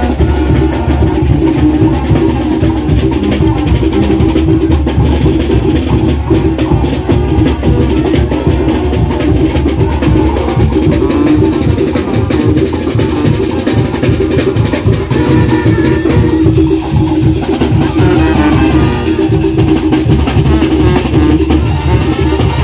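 Mexican brass band (banda) playing loudly: sousaphones and horns carry sustained low tones over a steady beat of bass drum and cymbals.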